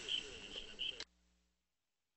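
Faint background voices with a row of short, high chirping blips, cut off abruptly about a second in, leaving dead silence as the broadcast audio feed drops out.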